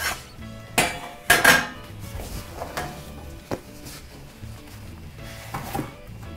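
A metal Pullman loaf pan knocking and clanking against a stainless steel counter and wire cooling rack as a baked loaf is turned out of it, a series of sharp knocks with the loudest about a second and a half in. Faint background music underneath.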